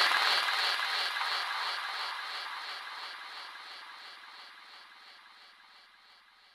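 Final tail of a psychedelic trance track: with the beat gone, a pulsing, echoing synth texture with no bass fades steadily away to silence about five seconds in.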